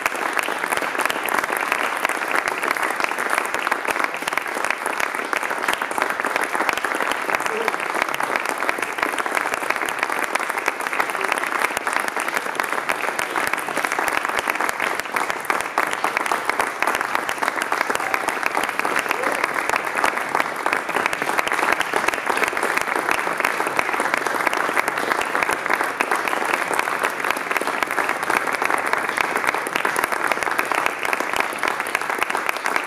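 Audience applauding: dense, steady clapping that keeps up without a break.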